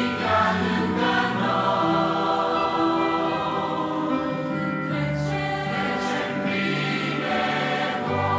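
Choir singing a Romanian worship song in sustained phrases, accompanied by an electronic keyboard.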